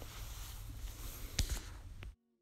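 Faint handling noise of a clear plastic drawer organizer, with one sharp click about one and a half seconds in.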